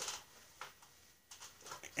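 Faint rustling and a few light ticks of something being handled, with quiet room tone between them.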